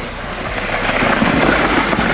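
Steady rushing noise of a sled sliding over packed snow, with wind buffeting the microphone.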